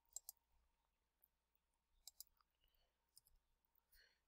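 Near silence with a few faint computer-mouse clicks, a pair near the start and another pair about halfway.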